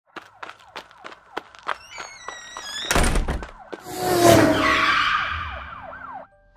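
Sound effects for a channel intro: a quick run of clicks with rising tones, a heavy hit about three seconds in, then a loud whoosh with falling tones that fades away.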